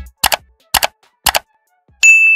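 A low thump, then three sharp double-click sound effects about half a second apart, like mouse clicks on an animated like-and-subscribe button.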